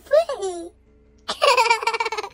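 A young child's voice: a short high-pitched vocal sound at the start, then a burst of laughter from about a second and a half in.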